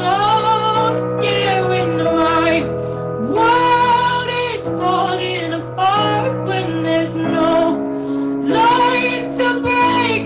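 A woman singing a slow song into a microphone in phrases about a second or two long, over held chords from an instrumental backing.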